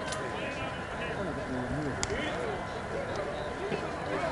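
Indistinct voices of players and onlookers talking around a softball field, with a single sharp click about two seconds in.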